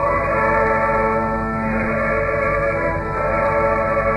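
Cathedral choir singing long-held chords over organ accompaniment, the harmony moving twice, heard on an old 1951 radio broadcast recording.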